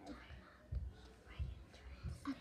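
Girls whispering quietly so as not to wake someone sleeping, with two soft low bumps in the middle.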